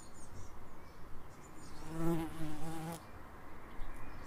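Bumblebee buzzing in flight for about a second, starting about two seconds in: a low, slightly wavering hum from its wingbeat that then cuts off.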